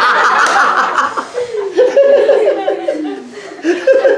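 A man laughing heartily in one long bout, breathy at first, then a rapid run of 'ha-ha' pulses that fall in pitch.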